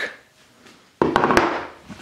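A resin-hardened book set down on a wooden workbench: a sudden knock about a second in, with a couple of sharp clicks, then dying away.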